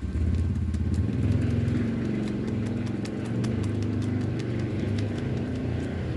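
A steady, low engine rumble, with many small clicks and crackles from cellophane wrapping being handled over it.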